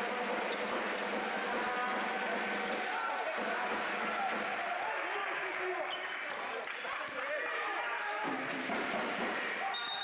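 A basketball being dribbled on a hardwood court during live play, under voices. Near the end a referee's whistle blows a short steady note for a foul.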